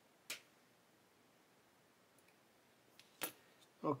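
A few sharp, light clicks of small metal modelling tools being handled on the workbench: one shortly after the start and two close together near the end.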